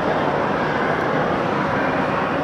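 Steady background din of a busy public ice rink, with skaters gliding and scraping across the ice.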